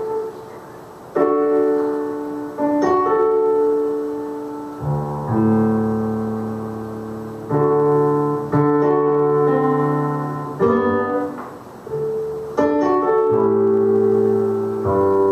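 Stage keyboard played with a piano sound, as a slow solo introduction: full chords struck one after another, each left to ring and fade before the next, with a new chord every one to two seconds.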